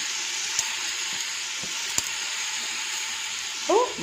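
Sliced onions frying in oil in an aluminium pot, a steady sizzle with a couple of faint clicks.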